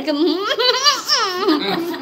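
A woman laughing: a run of high, rising-and-falling laughs.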